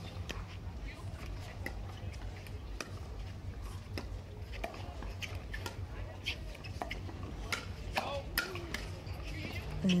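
Pickleball dink rally: paddles tapping a plastic pickleball back and forth in sharp pops, roughly once a second at an uneven pace, over a steady low hum.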